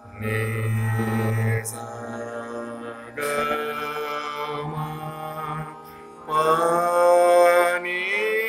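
A male voice sings raag Bihag in slow vilambit Hindustani classical style over a steady drone. He holds three long notes, and the third, about six seconds in, slides up into its pitch.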